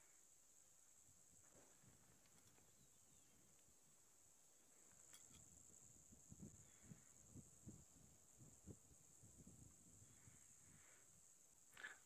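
Near silence: faint outdoor ambience with a steady high-pitched hiss, and a few soft low thuds in the second half.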